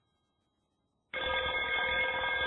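Silence, then about a second in a telephone starts ringing, a steady ring of several held tones.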